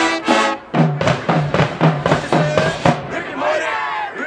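High school marching band: a held brass chord cuts off about half a second in, then the drums take up a steady beat of about three strokes a second with short low brass notes on the beat, and band members shout along.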